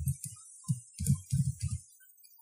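Typing on a computer keyboard: about seven or eight irregularly spaced keystrokes, each a dull thump with a click.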